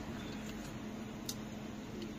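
A person drinking from a plastic bottle of iced tea: faint swallowing sounds and one small click a little past the middle, over a steady low hum.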